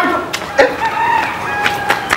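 A rooster crowing once, ending in a long held note.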